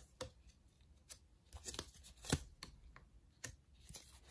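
Tarot cards being handled: a scattering of faint, short clicks and soft card flicks, the loudest a little past the middle.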